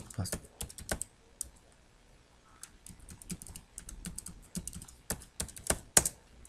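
Typing on a computer keyboard: irregular runs of sharp key clicks, with a short pause about a second and a half in before the typing resumes.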